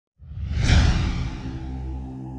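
A cinematic whoosh effect swells up out of silence a fifth of a second in, peaks within half a second and dies away, over a low sustained drone of title music.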